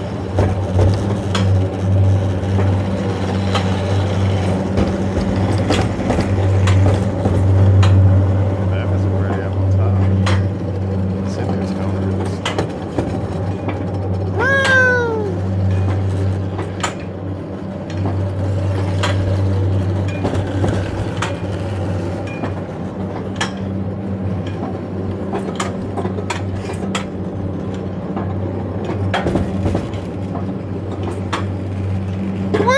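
Mountain coaster sled running along its steel rail: a steady low rumble with scattered clicks and knocks. About halfway through comes one short squeal that falls in pitch.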